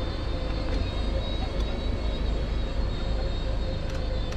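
Mobility scooter driving over fresh snow: a steady electric motor whine over a continuous low rumble.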